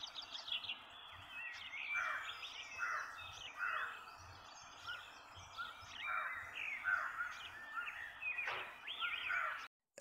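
Several birds chirping and calling outdoors, a busy stream of short, varied chirps and quick whistled glides over faint background hiss. The sound cuts off abruptly just before the end.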